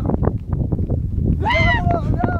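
A high, drawn-out call rings out about one and a half seconds in, bending up and then down: a thresher calling to the cattle as they tread the grain. Behind it runs a low wind rumble on the microphone and a stream of short rustles and knocks from hooves moving through the trampled straw.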